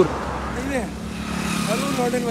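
Motorcycle engine running as it rides past along the road, a steady hum that comes in about halfway through.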